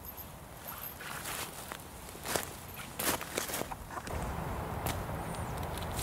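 Small stick campfire crackling with irregular sharp snaps, along with the handling of sticks and dry leaves as the fire is fed. A low rumble comes in about two seconds before the end.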